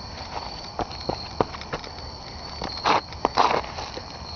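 Irregular footsteps crunching and rustling through pine straw and dry ground, a few scattered steps, with two broader rustles about three seconds in. Crickets trill steadily in the background.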